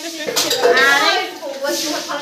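Metal utensils clinking against each other, with people talking.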